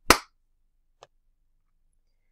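A single sharp clap that dies away quickly, followed by a faint click about a second later.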